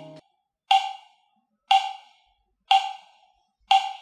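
Sync-test beeps, one short sharp tick each second, four in all, each dying away quickly, played from a phone over Bluetooth through a Tribit Home Speaker.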